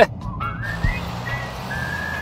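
A whistled tune: long held high notes with short rising slides between them, over a low steady hum.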